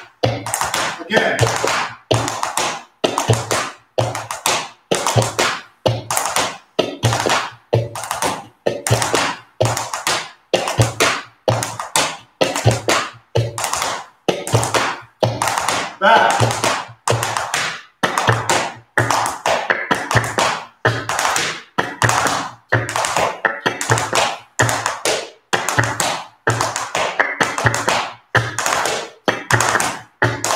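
Flamenco dance steps in hard-heeled shoes on a wooden floor: steady, evenly spaced taps, about two a second, with music underneath.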